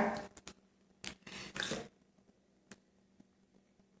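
Cards being handled: a few faint clicks and one short soft rustle about a second and a half in, as a card is drawn from the deck.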